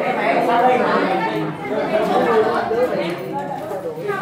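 Several voices talking over one another: students' chatter filling a classroom.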